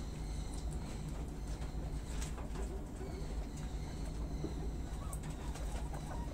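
Guinea pigs and a rabbit chewing leafy greens, with scattered faint crisp bites over a steady low rumble.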